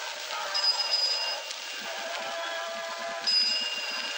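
Film soundtrack music over street ambience, with a bright high ringing tone that sounds twice, about half a second in and again near the end, each lasting about a second.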